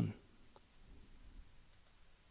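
Faint computer mouse clicks against low room noise: one about half a second in and another near the end, as an OK button is clicked.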